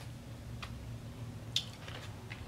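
Mouth sounds of chewing a dense, sticky milk caramel: a couple of short, soft wet clicks, the clearest about one and a half seconds in, over a low steady hum.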